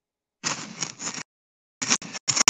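A phone's microphone picking up a short burst of rustling handling noise, about a second long, as the phone is moved and its camera turned around. The stream's audio drops out to dead silence just before and just after it.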